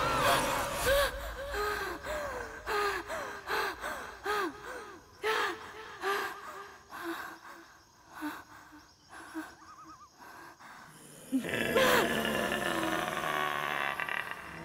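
A frightened woman's gasping breaths: short voiced gasps about twice a second that fade over about ten seconds. Near the end a louder sustained sound swells in.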